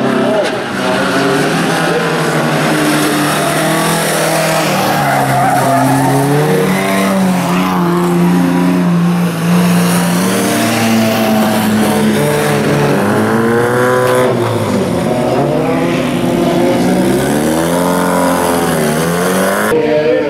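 Several old bilcross cars racing at high revs, their engines sounding together. The pitches rise and fall through gear changes, with cars sweeping up and down in pitch as they pass close in the second half.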